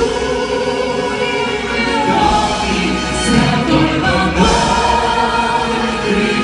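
Four voices, women's and men's, singing together in harmony over a live band and orchestra, holding long notes that move to a new chord about two seconds in and again just past four seconds.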